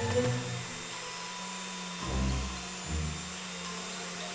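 Cartoon chainsaw running with a steady drone as its bar cuts into a tree trunk, over background music.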